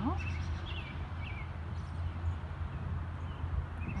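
Birds chirping, a few short curved notes in the first second and a half, over a steady low background rumble.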